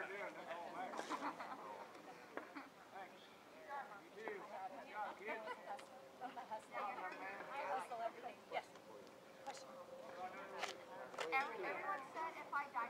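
Indistinct voices of people talking, too unclear to make out, with a few short clicks.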